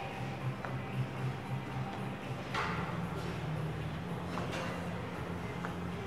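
Background music playing steadily, with a couple of brief soft thuds about two seconds apart.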